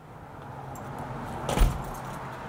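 A wooden front door pulled shut with one thud about one and a half seconds in, with keys jangling.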